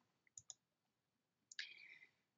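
Near silence with two faint, short clicks about half a second in, the click of the slide being advanced; near the end comes a faint in-breath before speech resumes.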